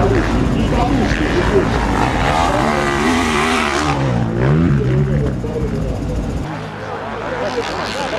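Motocross bike engines revving on the track, pitch climbing and falling as the riders throttle up and ease off, fading somewhat near the end.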